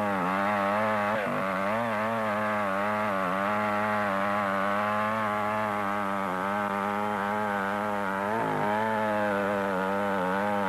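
Gasoline chainsaw running at high speed while cutting into a large tree trunk. Its pitch wavers steadily and dips briefly about a second in and again near the end.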